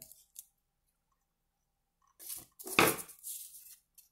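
Two pieces of box cardboard scraping and rubbing against each other as their cut slits are pushed together by hand: a few short, scratchy sounds starting about two seconds in.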